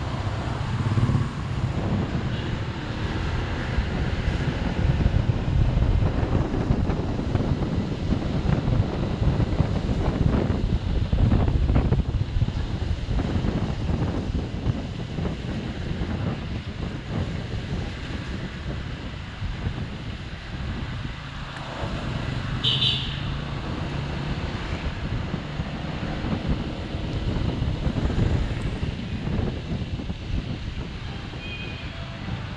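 Honda ADV 150 scooter's single-cylinder engine running as it rides through traffic, with wind buffeting the microphone. A short high-pitched chirp comes about three-quarters of the way through.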